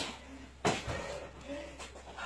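A single dull thump about two-thirds of a second in, then faint rustling, as the exerciser moves from standing down onto the gym floor mat.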